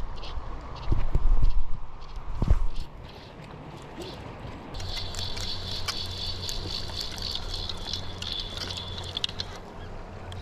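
Loud low thumps of handling or wind on the body-worn camera's microphone for the first few seconds. Then, from about five seconds in, a fly reel's click-pawl ratchets steadily for about five seconds as line is wound in on a hooked trout.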